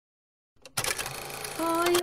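A video-editing transition sound effect: a click about half a second in, then a dense, noisy rattle lasting about a second.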